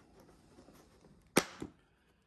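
Snap latch of a plastic collet case being unclipped: light handling of the plastic, then one sharp snap about one and a half seconds in, followed quickly by a softer click.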